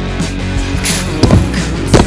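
Loud backing music with a strong beat. A short high hiss comes about a second in, and a few sharp hits follow near the middle and at the end.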